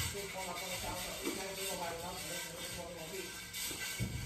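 Music with a singing voice.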